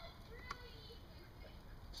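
Quiet background with a single faint click about half a second in.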